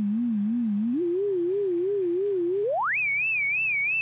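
VCV Rack sine-wave oscillator with a soft LFO vibrato, stepped by a sequencer through a slew limiter: a pure wavering tone, the gliding 'singing saw sound'. It slides from a low note up to a slightly higher one about a second in, then shortly before three seconds glides steeply up to a much higher note and holds there.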